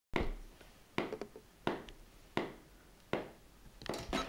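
Sharp clicks at a steady pace, about one every three-quarters of a second, each ringing briefly in a small room, like a count-in pulse before playing.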